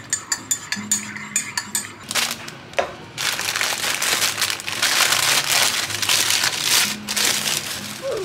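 Paper sandwich wrapping crinkling and rustling steadily for several seconds as a deli sandwich is unwrapped by hand, after a short run of light clicks and taps in the first two seconds.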